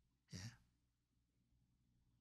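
Near silence broken by one short breath, a man's quick intake of air, a little under half a second in.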